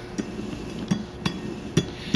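Steel clutch drums and planetary gears of a Toyota U660E automatic transaxle's gear train being turned back by hand, giving several light metallic clicks and clinks.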